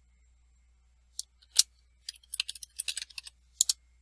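Computer keyboard keystrokes as a password is retyped at a terminal prompt: two separate taps, then a quick irregular run of taps, and a final close pair of taps near the end.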